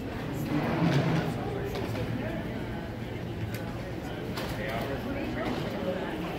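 Indistinct voices of people in a large hall over a steady low hum, as an ATL SkyTrain automated people-mover train pulls in behind the platform's glass screen doors.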